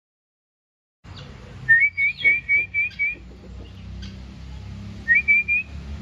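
A bird's whistled call: a quick run of about six short, slightly rising high notes, then a shorter run of three or four near the end, over a faint outdoor background.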